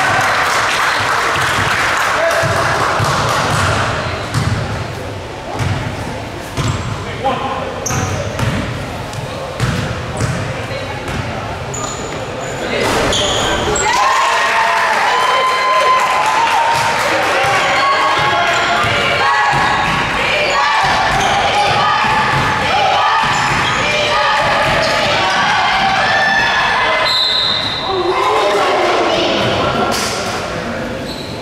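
Basketball bouncing on a hardwood gym floor during play, with many voices of players and spectators echoing in the hall; the chatter and shouting grow busier about halfway through.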